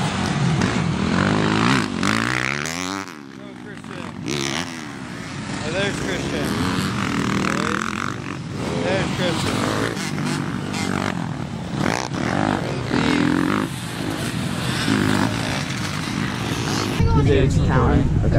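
Dirt bike and quad engines revving up and down on a motocross track, with voices over them.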